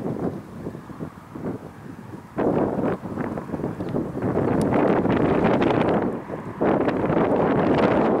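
Wind gusting across the microphone: a low rushing noise that jumps louder about two and a half seconds in, drops back for a moment a little after six seconds, then gusts up again.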